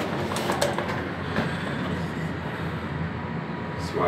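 Schindler passenger lift car travelling between floors: a steady low rumble and hum of the moving car, with a few faint clicks in the first second.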